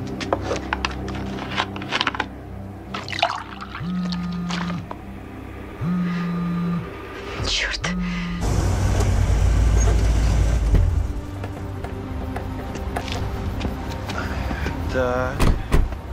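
A smartphone vibrating on a hard tabletop with an incoming call: three steady buzzes about a second long, a second apart. Then a loud low rumble of car engines takes over.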